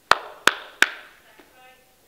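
A man clapping his hands three times, about three claps a second, each clap echoing briefly in the room.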